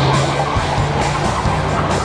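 Car tyres screeching, over rock music.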